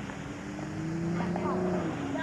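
A steady engine drone, rising slightly in pitch and dying away near the end, with faint chatter of voices.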